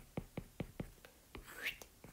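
Stylus tapping on a tablet's glass screen while handwriting: a quick series of light clicks, about five a second.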